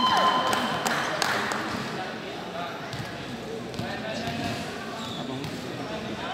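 Volleyball players' shouts and chatter echoing in a large indoor sports hall. The voices are loudest at the start and die down after a couple of seconds, with a few scattered knocks.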